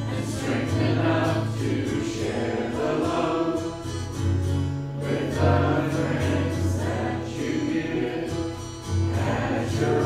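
A church congregation singing a hymn together, the voices carried over held low accompaniment notes.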